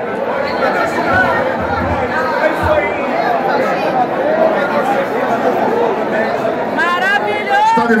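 Crowd chatter: many people talking at once in a packed group. Near the end one voice rises above the rest.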